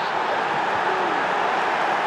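Football stadium crowd noise, a steady mass of voices just after a goal has been scored.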